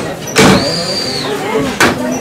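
Blacksmith's coal-forge bellows worked by hand, blowing air into the fire. About half a second in comes a rush of air followed by a high, drawn-out squeak. A short knock of the mechanism falls just at the start and another near the end, part of a stroke every two seconds or so.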